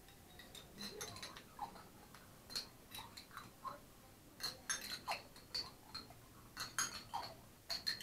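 Metal spoons clinking and scraping against small glass baby-food jars, many irregular light clicks that come thicker in the second half.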